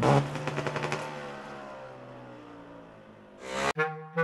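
Motocross bike engine revving high, its pitch falling as it fades away over about three seconds. Near the end there is a short rush of noise, then brass music comes in.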